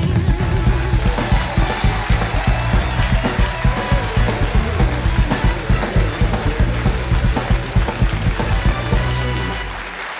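Live house band, with drum kit, bass guitar and electric guitar, playing an upbeat instrumental walk-on tune with a steady beat. The music dies away near the end.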